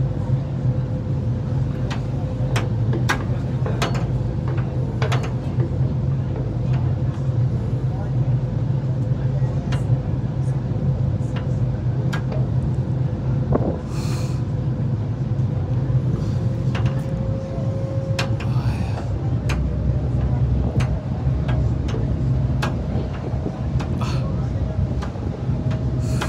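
A boat's engine running at a steady cruise, a constant low drone heard on board, with water and wind noise and scattered small knocks.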